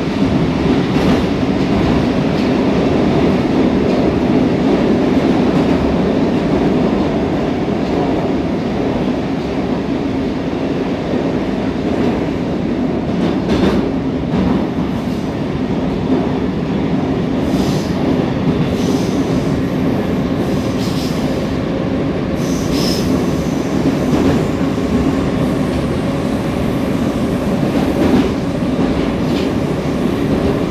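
A moving Oka 81-760/761 Moscow metro train heard from inside the passenger car: a loud, steady running rumble of wheels on rail and traction gear. Brief high-pitched wheel squeals come through several times in the second half.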